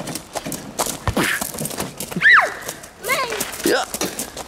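Short wordless calls and squeals from a toddler and an adult at play, one high squeal about halfway through, over footsteps on gravel.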